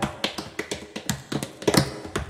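Tap dancing on a portable tap board: a quick, uneven run of sharp taps, with the band dropped out.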